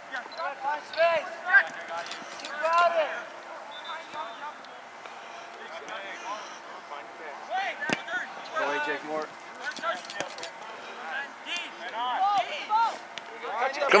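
Scattered shouts and calls from players and spectators across an open soccer field, rising louder near the end, with one sharp thud about eight seconds in.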